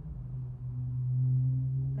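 A steady low hum: one held tone with a faint overtone, swelling slightly in its second half.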